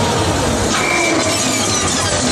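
A loud noise-like sound effect in the dance routine's music mix, played over the PA. It has a brief steady high tone about a second in and faint falling whistle-like sweeps after it.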